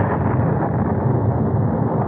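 Radio-drama thunder sound effect: a steady rolling rumble with a rushing roar over it, heard through an old recording with the treble cut off.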